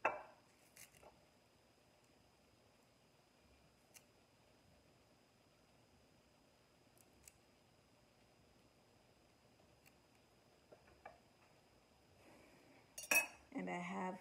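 Sparse, faint clicks and taps of a kitchen knife cutting chives by hand over a glass baking dish, with long quiet gaps between them.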